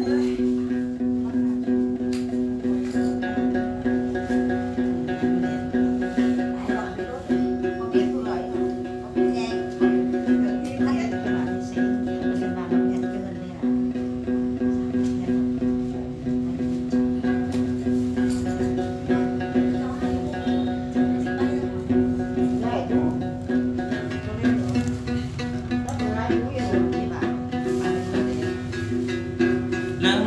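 Then music: a đàn tính gourd lute plucked over steady held tones, with a voice over them.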